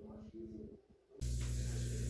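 A steady machine hum with an even hiss, starting abruptly about a second in after a brief near-silent gap.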